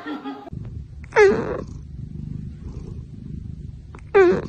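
A cat meowing once, a short call of about half a second that falls in pitch, over a low steady rumble.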